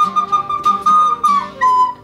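Plastic recorder blown to hold one steady, high note, which drops to a slightly lower note near the end.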